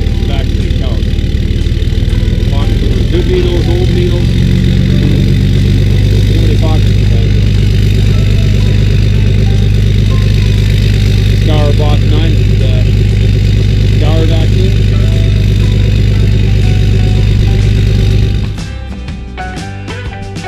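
An engine idling steadily and loudly close by, with a low, fast pulsing throb; it stops abruptly near the end.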